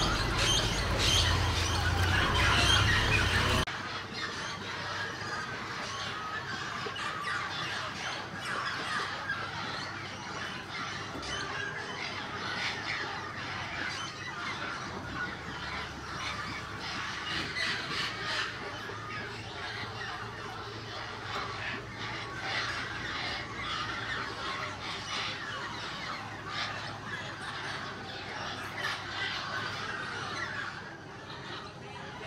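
A large flock of amazon parrots, yellow-crowned and mealy amazons, squawking and chattering in a dense, continuous chorus at a clay lick. For the first four seconds a low rumble lies under the calls, until it cuts off abruptly.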